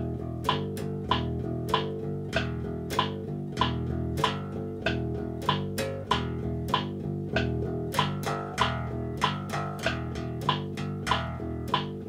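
Electric bass guitar plucked in a simple repeating beginner line of two E's and two G's, played in time with a metronome. The metronome clicks steadily at 96 beats a minute, about one click every 0.6 seconds.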